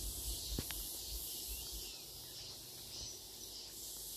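Faint, steady high-pitched insect drone, with a low rumble underneath and a single small click about half a second in.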